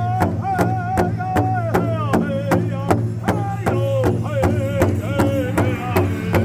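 Powwow drum group singing a contest song: several men strike one large hide-covered powwow drum together in a steady beat, about three strokes a second, under a lead singer's high sung line that steps down in pitch.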